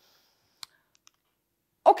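Near silence broken by one sharp click about half a second in and two faint ticks a little later, before a woman's voice starts just before the end.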